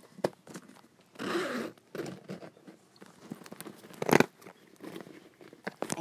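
Zipper of a Louis Vuitton canvas handbag being pulled open, with rustling and small clicks from handling the bag. There is a short rasp about a second in and a louder sharp knock about four seconds in.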